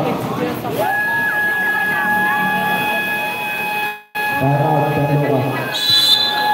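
Crowd voices at an outdoor basketball game, with short high squeaks early on and a steady high-pitched tone, like a horn or a public-address squeal, held for several seconds from about a second in. The sound cuts out completely for an instant about four seconds in, and a brief higher tone sounds near the end.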